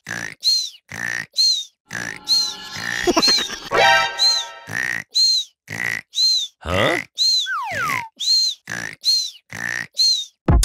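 Cartoon snoring sound effects: a quick, even run of short snores, a longer buzzing snore about two to four seconds in, and a whistling exhale falling in pitch near the end.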